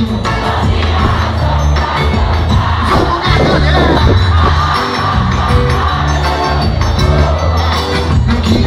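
A forró band playing live, with electric and acoustic guitars, zabumba and drum kit over a steady bass line, heard from within the audience with crowd noise mixed in.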